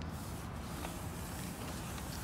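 Long flat cardboard boxes being slid and shifted onto a car's back seat: faint scraping and rustling, with a light knock about a second in, over steady outdoor background noise.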